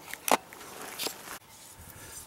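Footsteps on stony, grassy ground: a sharp step about a third of a second in and a fainter one about a second in.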